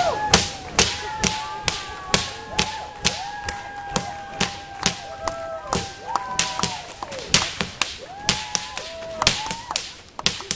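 Whips being cracked in a rapid, steady run, about two to three sharp cracks a second.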